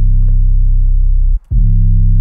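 A deep 808 bass note held on a low C while it is tuned into key. It cuts off about a second and a half in and starts again straight away as the note is retriggered.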